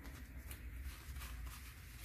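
Paper banknotes rustling faintly as a small stack of dollar bills is squared and flicked through by hand, with a few soft ticks of paper.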